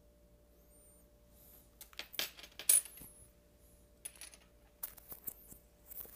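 A metal pendant necklace and its chain jingling and clinking while being handled and put on, in a burst about two seconds in, loudest near the three-second mark, and a few lighter clinks from about four seconds on.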